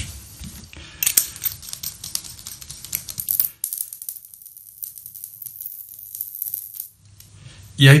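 Handling of a plastic LED bulb: a quick run of clicks and scrapes as it is closed up and fitted into its lampholder, stopping about three and a half seconds in. After that only a faint high hiss remains.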